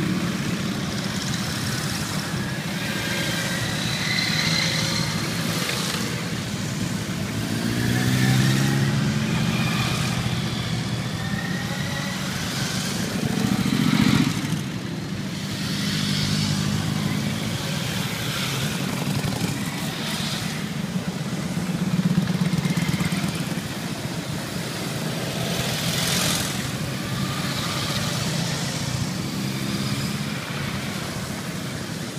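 A long column of motorcycles, cruisers and sport bikes, riding past one after another, their engines running steadily. The sound swells and fades as each bike or small group passes, with a few louder passes and engines rising in pitch as riders open the throttle.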